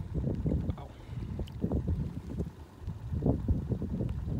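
Wind buffeting the microphone in low, uneven gusts, with small splashes of water against the side of the boat.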